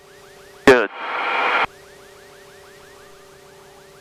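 Electronic tone in the aircraft's headset intercom audio: a steady low hum with a faint chirp repeating about five times a second. A burst of hiss about a second in cuts off suddenly.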